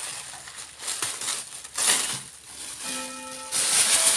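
Tissue paper and plastic packaging rustling and crinkling as a parcel of clothes is unwrapped, loudest in two bursts, about halfway and near the end. About three seconds in, a clock chime begins, one sustained bell note followed by another.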